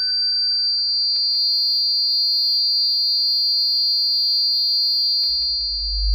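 Electronic drone music: a steady high-pitched whine held over a low hum, with a middle tone fading out about a second in and a deep bass swell building near the end.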